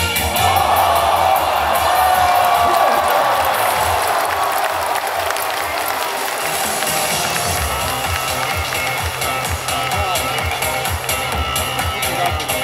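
Stadium crowd cheering and clapping, loudest in the first few seconds. About halfway through, a dance beat from the stadium sound system comes in under the crowd.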